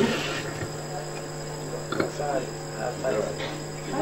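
A lull in conversation: a steady low electrical hum and a faint, steady high-pitched tone under the room sound, with a few faint murmured words and a small click about halfway through.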